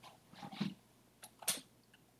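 Two quiet, sharp clicks about a second apart, typical of a computer mouse clicking to switch browser tabs. A brief soft sound comes just before them.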